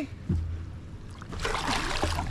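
Water splashing and dripping as a person hauls himself over the side of a small plastic-hulled jon boat from the shallows, with a short low rumble of the hull near the start and the splashing growing louder over the last half second.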